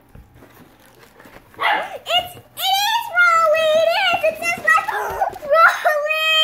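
A young girl squealing with excitement: after a quiet first second or so, long, high-pitched, wavering wordless squeals start about a second and a half in and carry on to the end.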